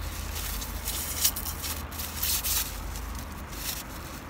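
Irregular crinkling and rustling of fast-food packaging being handled, in bursts, over a steady low rumble inside a car.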